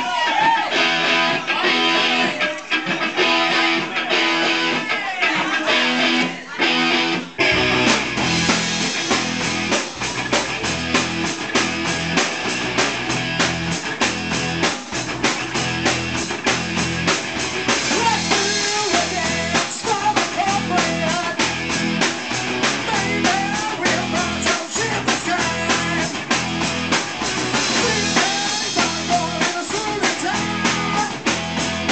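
Live rock band playing amplified in a small room: an electric guitar plays alone for about the first seven seconds, then bass and drums come in with a steady beat.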